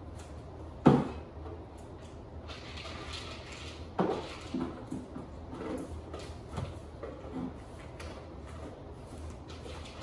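A sharp knock about a second in and another at about four seconds as a dog's feeder bowl is handled, then a run of small clicks and clinks as a dog eats from a raised food bowl.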